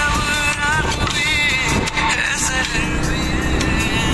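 Background music with a wavering melodic line, playing over the steady low rumble of a moving vehicle on the road.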